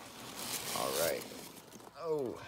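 Foam packing peanuts and a cloth bag rustling and scraping as a bagged turtle is lifted out of a shipping box, with a short pitched sound about a second in.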